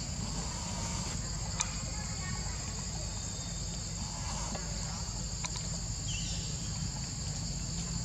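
A steady, unbroken high-pitched drone of forest insects over a low rumble, with a couple of sharp clicks and a brief falling chirp near the end.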